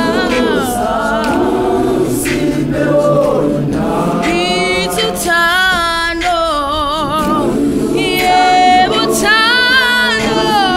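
Large South African youth gospel choir singing a cappella in close harmony. A lead voice with a strong vibrato rises above the choir in the second half.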